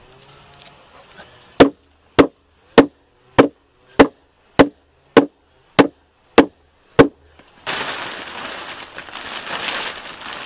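Ten evenly spaced blows of a hammer on wood, each a sharp knock, a little over half a second apart. Near the end, a steady crinkling rustle of plastic sheeting being handled.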